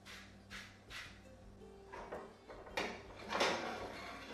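A metal spatula scraping and stirring a thick spice paste in a stainless steel skillet. Soft strokes come about twice a second at first, then the scraping turns louder and denser from about two seconds in.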